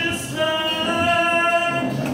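A man singing a song live with held notes into a microphone, amplified through a PA, with acoustic guitar and keyboard accompaniment.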